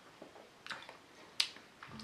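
Faint mouth clicks and lip smacks from a taster working a mouthful of beer: a few short, sharp clicks, the loudest about one and a half seconds in.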